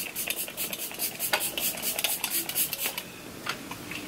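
Pump-spray bottle of facial essence misting onto the face in a quick run of short spritzes for about three seconds, followed by a few fainter ones.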